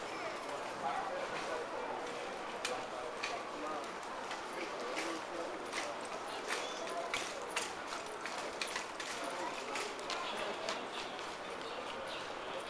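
Indistinct murmur of people's voices, with irregular sharp clicks and taps scattered throughout.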